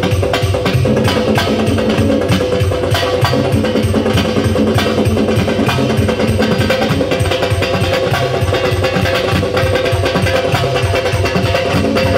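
Live instrumental music: an electronic keyboard plays a sustained melody over a fast, dense drum rhythm beaten with sticks, with sharp clicking strokes.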